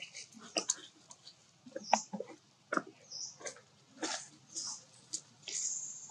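Macaque sounds: short high squeaks and soft clicks, scattered with quiet gaps, with one longer thin squeak near the end.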